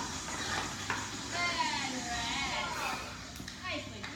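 Voices with no clear words, sliding up and down in pitch, over a low steady hum. There is a single thump about a second in.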